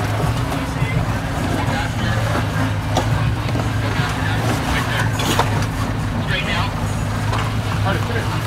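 Suzuki Samurai engine running steadily at low revs as the rig crawls over rock, with scattered clicks and crunches from tyres on stone and people's voices in the background.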